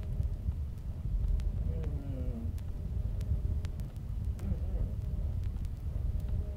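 Crackly playback from a worn vinyl record of a lo-fi tape recording: a steady low rumble with scattered sharp clicks of surface noise. A brief faint voice sounds about two seconds in.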